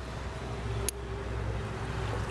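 Steady low background rumble with one sharp click about a second in.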